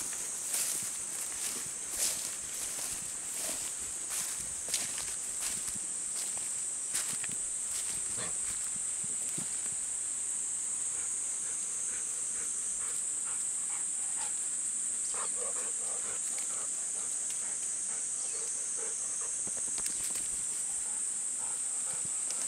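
Cicadas droning steadily at a high pitch, with scattered rustles and ticks in the first several seconds from a golden retriever moving through long grass.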